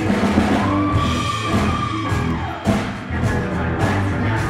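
Live rock band playing: electric guitar, bass guitar and drum kit, with a long held note through the first half.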